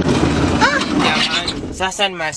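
Engine and road noise of a passenger minibus heard from inside the cabin, a steady rumble. A voice calls out briefly with a gliding pitch about half a second in, and a man starts talking near the end.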